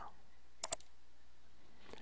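Computer mouse clicks: two quick clicks close together about half a second in, and a fainter one near the end, over low background hiss.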